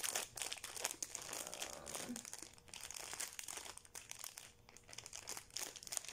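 Clear plastic bag of toy figures crinkling as it is handled and moved about, in irregular rustles that die down for a moment about four and a half seconds in.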